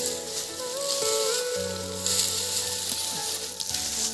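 Dry, sun-withered soybean plants crackling and rustling as an armful of stalks and pods is grabbed and lifted, a dense continuous crackle, with soft background music and its slow stepped melody underneath.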